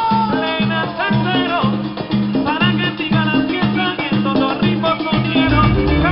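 Live plena band playing an instrumental passage of a plena-salsa song: hand drums including panderos and congas keep a steady repeating rhythm under a melodic line, without lead vocals.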